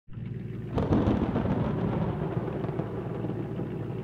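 A thunderclap about three-quarters of a second in, rolling on into a long low rumble over the steady hiss of falling rain.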